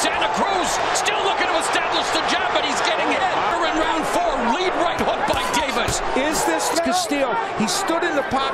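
Ringside sound of a boxing bout: several voices shouting over one another, with frequent sharp smacks of punches landing on gloves and bodies.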